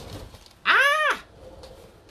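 A single short animal cry, its pitch rising and then falling, lasting about half a second.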